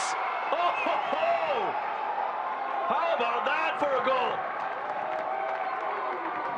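Several voices shouting and cheering at once in celebration of a goal, overlapping calls that rise and fall in pitch over thin crowd noise.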